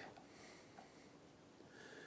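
Near silence: a pause with only faint background hiss.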